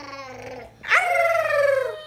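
A high-pitched human voice howling one long note that slides slowly downward, starting loud about a second in, after a fainter sung note trails off.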